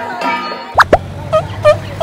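Music with percussion, cut off about three-quarters of a second in by a sharp sliding pop sound effect. Then a few short, bouncy plop notes follow, about three a second, over a low steady hum.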